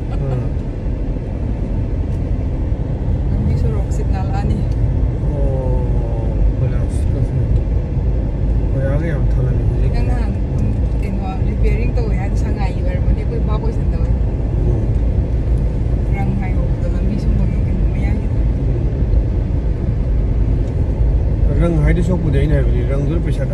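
Steady low rumble of engine and road noise heard from inside a moving car.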